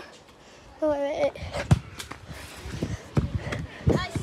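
A short voice sound about a second in, then scattered thumps and rustling: handling noise from a phone carried on the move, with footsteps.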